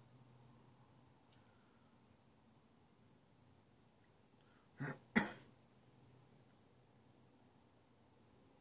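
A man clearing his throat: two short bursts about a third of a second apart, the second louder, about five seconds in, against otherwise quiet surroundings.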